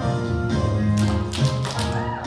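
Tap shoes striking the stage in a quick run of taps starting about a second in and lasting nearly a second, over a band's accompaniment.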